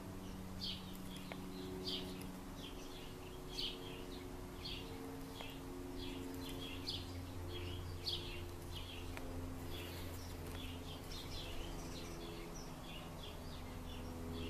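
A small bird chirping over and over in the background, one to two short, high chirps a second, with a faint steady low hum underneath.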